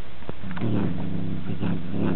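Domestic cat growling: a low, steady growl that starts about half a second in, with a few short clicks over it.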